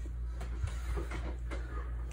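Quiet room tone with a steady low hum and a few faint handling clicks and rustles.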